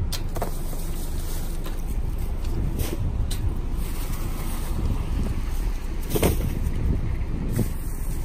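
Wind buffeting the microphone with a steady low rumble, and several short crinkles and rustles of plastic grocery bags being lifted out of a wire shopping cart.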